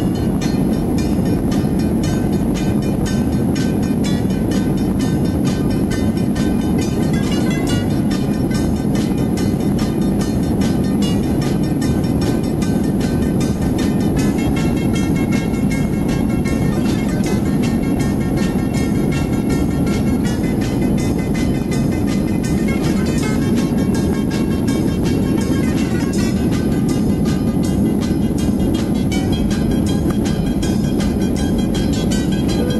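Jet airliner engines at takeoff power, heard inside the cabin as a steady loud rumble during the takeoff roll. Music with a steady beat plays over it.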